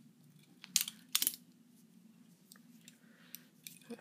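Benchmade 62T balisong trainer being flipped by hand: its metal handles and blade clicking against each other, with a quick cluster of sharp clicks about a second in and a few lighter ticks later.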